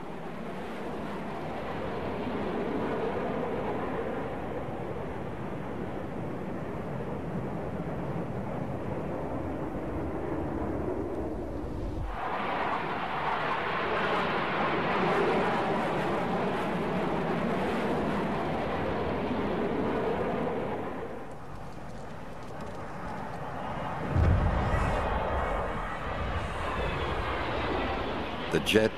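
Airplane engine noise, steady and rushing, with an abrupt change about twelve seconds in. A loud low rumble swells up a little after twenty seconds.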